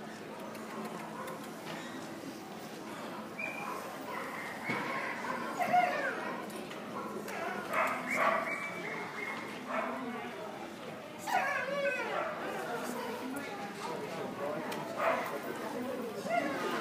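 A dog barking several times, with people talking in the background.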